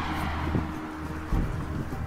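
Wind rumbling on the microphone, with a low thump about a second and a half in.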